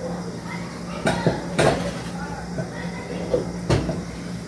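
Metal cooking pots and pans knocking and clattering as someone rummages for a pan, with three sharp clanks spread through the few seconds.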